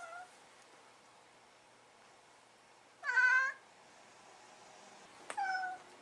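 Orange tabby cat giving three short meows, the middle one loudest, meowing at an insect on the window screen.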